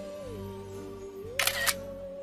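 Camera shutter sound effect: one short, loud shutter click about one and a half seconds in, over slow sustained background music.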